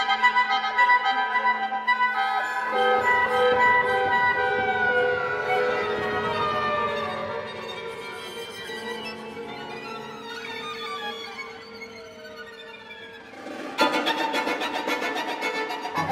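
Contemporary chamber ensemble music with bowed strings: held notes, several of them sliding slowly downward in pitch, thinning and growing quieter, then a sudden dense entry of rapid repeated notes near the end.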